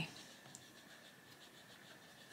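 Faint scratching of an Arteza Expert coloured pencil on paper as it shades a leaf in light strokes, with one small tick about half a second in.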